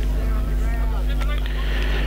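Voices of players and spectators calling out across a football ground, loudest about half a second in, over a steady low rumble.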